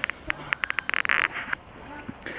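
Brown bear cub chewing fir branches: a quick run of short crunching snaps in the first second or so, then quieter.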